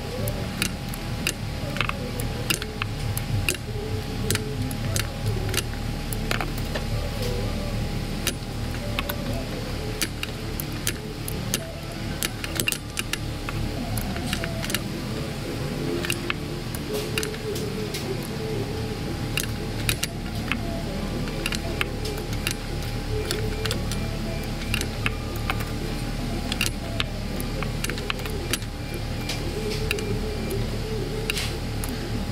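Background music over irregular metallic clicks and clinks from a hand ratchet on a long extension, tightening spark plugs in an engine bay.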